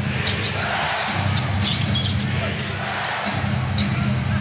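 Basketball dribbled on a hardwood court, a run of sharp bounces, with short sneaker squeaks, over steady arena crowd noise.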